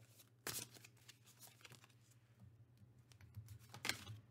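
Faint handling of a tarot deck: soft card shuffling with a few short card snaps. A sharper snap comes near the end as a card is laid down on the spread.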